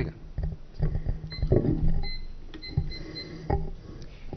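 Table microphone being handled and moved, giving a run of knocks, thumps and rubbing clicks.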